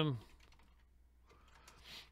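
Typing on a computer keyboard: a few faint key clicks, mostly in the second half.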